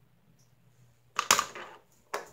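Handling noise on the recording device's microphone: a loud scraping clatter about a second in, lasting about half a second, as the camera is touched or moved.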